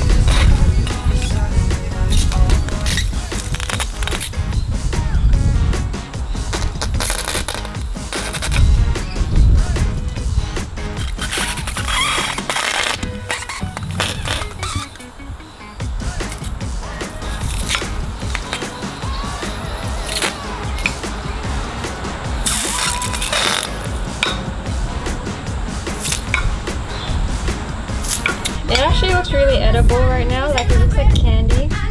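Background music, with short bursts of sizzling each time a heated knife blade cuts into giant water-filled Orbeez gel beads.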